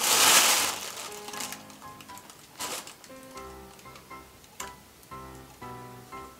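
Tissue paper rustling loudly for about a second as a packed box is dug into, followed by a few lighter crinkles under soft background music with short plucked notes.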